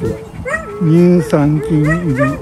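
Jack Russell Terriers giving a quick run of about four whining yips and barks, each bending up and down in pitch, with a short sharp click partway through.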